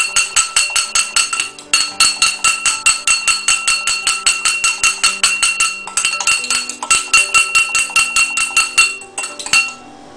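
Metal fork beating egg yolk and milk in a tall drinking glass: a rapid, even clinking of the tines against the glass, which rings with each strike, with a few brief pauses.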